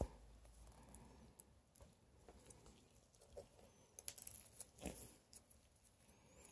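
Near silence, with a few faint scattered clicks and rustles, most of them about four to five seconds in: gloved hands handling insect pins on a foam board.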